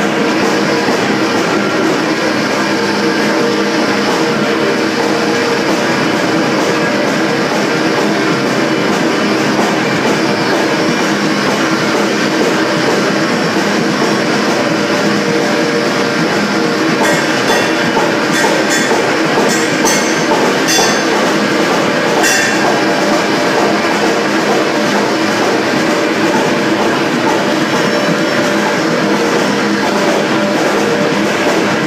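Live rock band: electric guitar and drums playing together in a loud, dense, unbroken wash of sound, with a few sharp hits a little past the middle.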